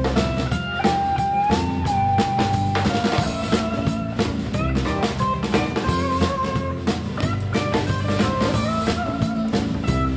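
Live band playing an instrumental passage: drum kit keeping a steady beat under guitar, with a lead line of long held notes that bend and slide in pitch.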